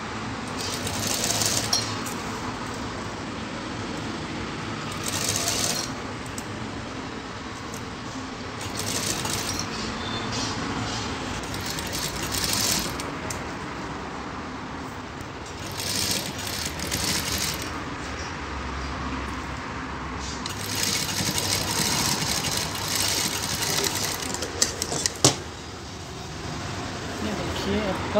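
Single-needle lockstitch sewing machine stitching piping in short slow runs, starting and stopping every few seconds with one longer run near the end. A few sharp clicks follow it.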